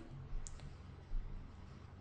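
A couple of faint, sharp clicks over a steady low hum.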